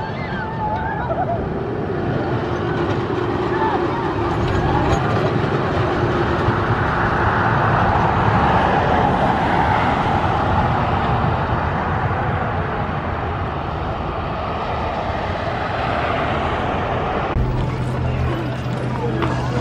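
Road traffic noise, swelling around the middle as a car passes close by. Near the end the sound changes to a steady low hum.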